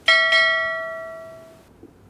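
A bell-like chime struck twice in quick succession, ringing and fading away over about a second and a half.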